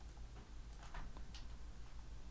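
Faint, irregular clicks of a computer keyboard and mouse, about half a dozen in two seconds, over a low steady hum.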